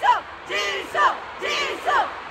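Concert crowd chanting in rhythm: high voices shouting short calls about twice a second, each call falling in pitch.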